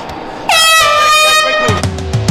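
A loud air horn blast starting about half a second in and holding for about a second before sliding down in pitch. It is typical of the horn that ends a round in a caged MMA bout. Music with a heavy beat comes in under it near the end.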